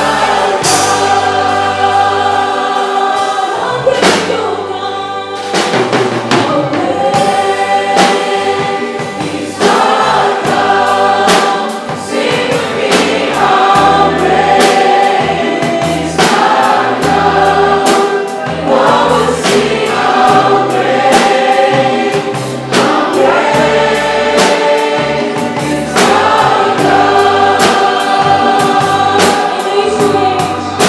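A worship song sung by many voices together with a live band: drum kit, hand drums and bass under the singing, with a steady beat.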